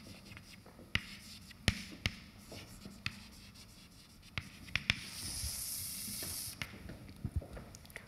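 Chalk writing on a blackboard: scattered sharp taps and short scratches as the chalk strikes and drags across the board, with one longer, high scratching stroke lasting over a second about five seconds in.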